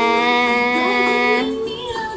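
A woman's voice holding one long, steady 'ahh' with her tongue stuck out in the lion-face yoga pose, cutting off suddenly about one and a half seconds in, followed by stifled laughter.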